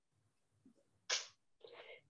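Mostly near silence, broken about a second in by one short, sharp breathy noise from a person, like a quick intake of breath, and a fainter breathy sound near the end.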